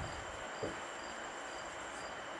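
Quiet room tone: a steady hiss and a thin high whine, with a faint high chirp repeating about twice a second. A single soft knock about a third of the way in.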